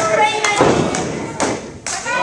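A couple of thuds from wrestlers grappling in a wrestling ring, about half a second and a second and a half in, over people's voices.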